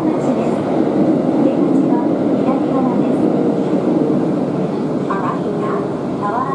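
Interior running noise of a Tokyo Metro Ginza Line 1000 series subway car in motion: a steady rumble of wheels on rail with motor hum, heard from inside the carriage.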